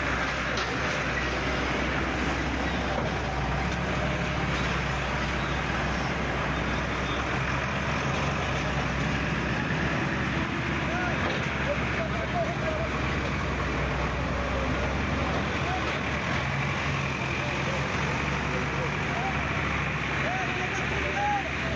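A heavy vehicle engine running steadily, under a constant hiss, with people talking in the background.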